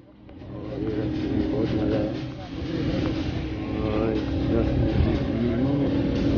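Engine and road rumble inside a moving vehicle's cabin, rising back up about a second in, with voices in the background.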